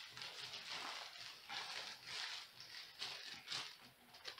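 Clear plastic packaging crinkling and rustling in irregular bursts as it is pulled open and off a packaged item.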